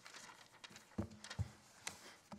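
Footsteps, then two dull thumps about half a second apart and a sharp knock near the end as papers and folders are set down on a wooden lectern fitted with a microphone, with light paper rustling.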